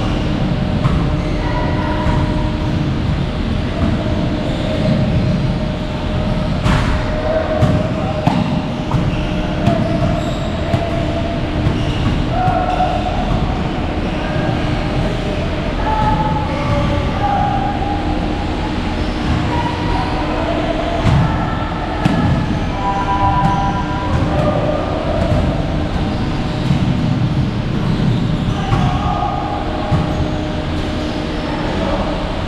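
Loud, steady low rumble with a constant hum, faint snatches of music or voices over it, and a sharp click about seven seconds in.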